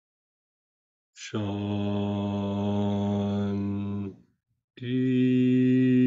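A man chanting a long "Om" on one low held note, starting about a second in and lasting about three seconds, then breaking off and starting a second held "Om" under a second later.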